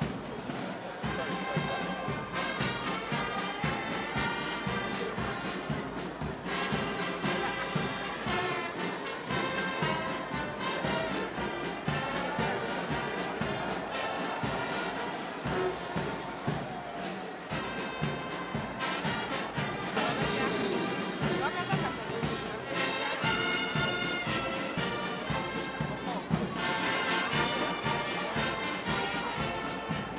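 Brass band playing marching music with a steady beat, over the murmur of a crowd.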